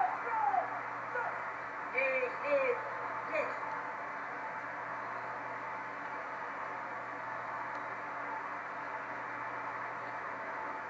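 A voice calls out a few brief, drawn-out words in the first three seconds or so. After that there is only a steady hiss of recording noise with a faint low hum.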